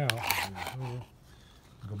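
A brief scraping rub as a hand handles the antenna analyzer and its clip lead on concrete, under a man's spoken word, then quiet.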